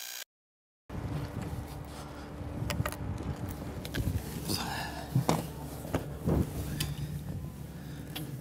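After a second of silence, a person squeezes through a small submersible hatch: fabric rustling and scattered knocks and bumps against the hull over a steady low hum.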